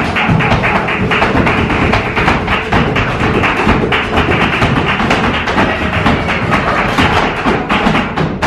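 Flamenco dancer's rapid zapateado footwork, heels and toes striking a wooden stage in quick strikes, with hand clapping (palmas) and flamenco guitar.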